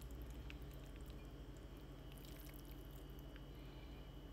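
Very quiet room tone: a steady low hum with a faint high whine, and a few faint soft ticks.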